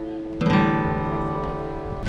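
Flat-top acoustic guitar strummed with a pick: a fading chord, then a new chord struck about half a second in and left to ring.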